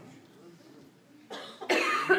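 A man coughing: a short, loud cough near the end, after a quiet pause.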